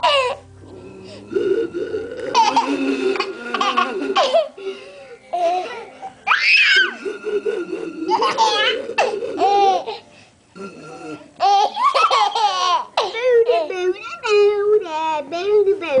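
A baby of under a year laughing hard in repeated bursts, some rising into high squeals.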